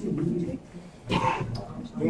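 Only speech: a low man's voice speaking indistinctly, with a short louder phrase about a second in.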